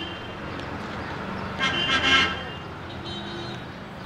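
Street traffic with vehicle horns tooting over a low engine hum. The loudest toot comes about halfway through, and a fainter one follows about three seconds in.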